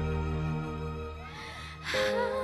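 Live band accompaniment to a pop ballad: held chords over a bass note, dying down through a pause in the vocal line. Near the end the singer takes a sharp breath into the microphone just before her next line.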